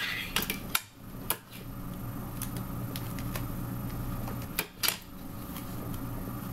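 Clear adhesive tape pulled from a desk tape dispenser and applied to a rolled paper tube, with scattered clicks and light knocks of handling on a wooden tabletop; a sharp pair of clicks comes near the end. A steady low hum runs underneath.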